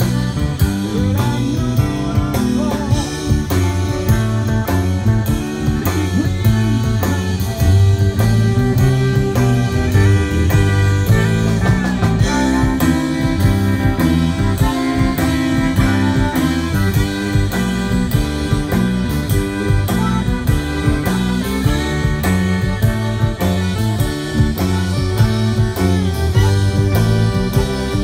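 Live Cajun band playing an instrumental passage: accordion, fiddle, electric guitar and electric bass over a drum kit keeping a steady beat.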